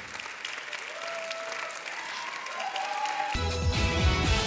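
Audience applause with soft music under it. About three seconds in, this cuts off abruptly into louder music with a strong bass.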